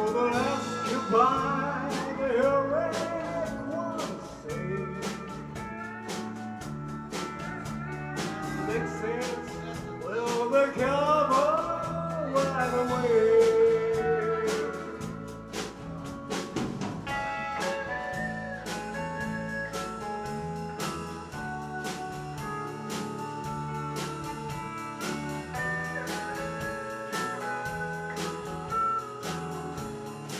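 A live band plays with steel guitar, acoustic guitar, keyboard and a steady drum beat. In the first half the steel guitar plays sliding lead phrases that glide up and down in pitch; later the band settles into steadier held chords.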